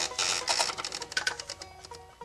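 Typewriter keys striking in quick, uneven clicks over background music; the clicks thin out near the end.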